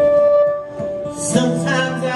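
Live rock band: a fiddle holds one long note that fades out about halfway through, then about a second and a half in the band comes in together with a strummed acoustic guitar chord, electric bass and a cymbal.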